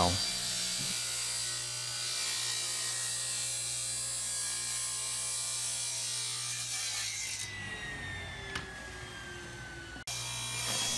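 Grizzly table saw running and ripping a thin strip of wenge, with a steady motor hum and a high whine. About seven seconds in, the whine starts falling slowly in pitch as the blade winds down.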